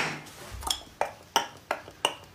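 A handful of short, sharp clicks or light taps, irregularly spaced about a third of a second apart.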